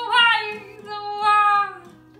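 A woman singing to her own acoustic guitar strumming: a short bending note at the start, then a long held note that sinks slightly in pitch and fades near the end.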